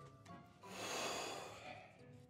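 A long breath out, a breathy rush lasting about a second, over faint background music.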